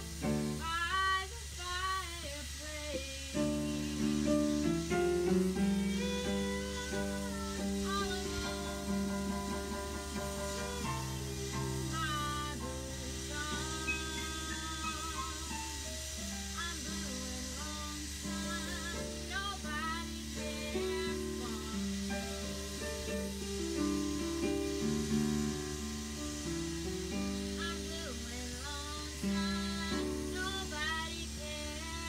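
A woman singing a blues number with a wavering vibrato on her held notes, accompanied by chords on a Yamaha digital piano.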